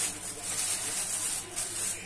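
Thin plastic bag rustling and crinkling as it is handled, with pieces of raw meat being emptied from it into a plastic bowl.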